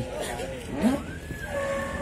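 Background chatter of several people talking at a livestock market, with a low steady rumble of market noise beneath.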